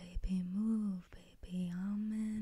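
A woman humming a melody softly and close to the microphone, in a few held notes that bend gently up and down, with short breaks between them. A few small mouth clicks come at the start.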